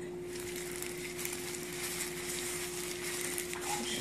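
Faint crackling rustle of plastic gloves and a paper towel being handled while a pimple is squeezed, over a steady low hum.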